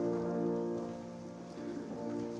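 Grand piano playing slow sustained chords: one chord struck at the start rings and fades, and the next comes in at the very end. Faint shuffling of people moving sits underneath.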